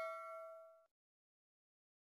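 Tail of a bell-chime sound effect for an on-screen notification bell, a single ding with several overtones fading out and cut off suddenly just under a second in.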